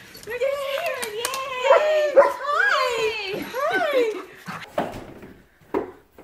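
Golden retrievers whining and howling in excited greeting, the calls sliding up and down in pitch for about four seconds before fading. A short knock comes near the end.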